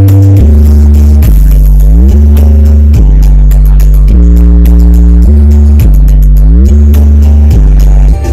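Loud DJ dance remix played through a large event sound system, dominated by long, heavy bass notes that change every second or so, several sliding upward into the next note.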